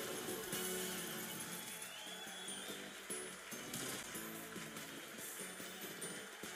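Sweet Bonanza 1000 slot game's music playing quietly, with light tinkling win effects over it.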